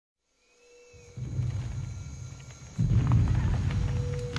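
Deep rumbling intro sound effect. It starts about a second in and grows louder near three seconds.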